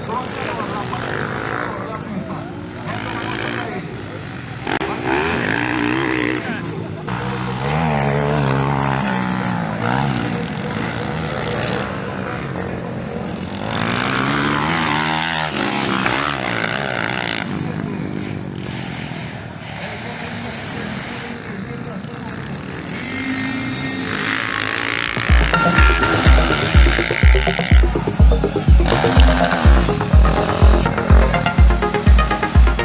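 Motocross bikes revving and riding past, the engine pitch rising and falling over the course. Near the end, electronic music with a heavy, steady beat comes in.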